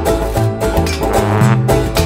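Bluegrass band playing an instrumental bar: banjo picking over a walking upright bass line.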